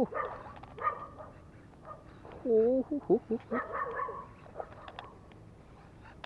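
A man's excited wordless cries and grunts while he fights a hooked fish on a baitcasting rod and reel, the loudest a long wavering call about halfway through. Short clicks come from the reel and rod near the end.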